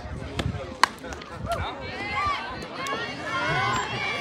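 A softball bat striking a pitched ball once with a sharp crack, followed by spectators and players shouting.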